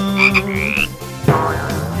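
A frog croaking sound effect over the song's backing music.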